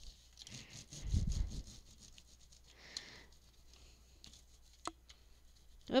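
Speedball brayer rolled over corrugated cardboard, loading its ridges with acrylic paint: a faint, rough rubbing, with a louder low rumble about a second in and a single click near the end.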